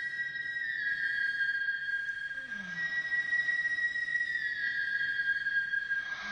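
Background music of long held high electronic notes that step to a new pitch a few times.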